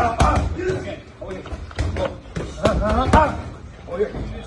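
Boxing gloves striking a trainer's focus mitts in quick combinations: a run of sharp smacks.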